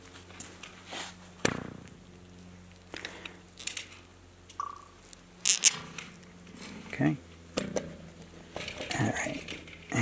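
Hands fitting a plastic well cap down onto a well casing: scattered clicks and knocks of the cap, bolts and cables being handled, over a steady low hum.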